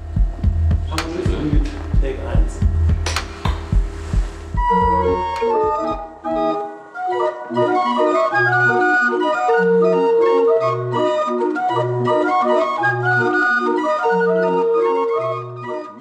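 A few knocks and handling noises over a low rumble. Then, about five seconds in, a small barrel organ starts playing a tune of sustained pipe notes, with a bass note sounding about once a second underneath.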